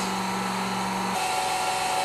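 GPI electric fuel transfer pump running steadily, pumping biodiesel through the hose and nozzle into a barrel; its hum shifts to a higher tone about a second in.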